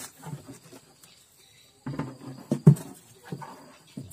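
A freshly caught lembat catfish flapping inside a plastic jerry can: a few bumps and slaps in two short bouts, the second and louder one after about two seconds.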